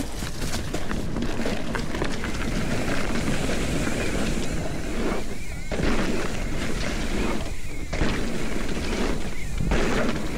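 Wind rushing over the camera microphone with the low rumble of mountain bike tyres rolling fast over packed dirt and dry leaves through a jump section. The rushing noise thins briefly three times in the second half.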